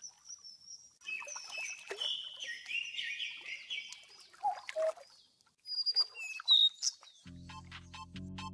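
Birds chirping and calling, with high whistled notes and quick gliding chirps. About seven seconds in, background music with a steady beat begins.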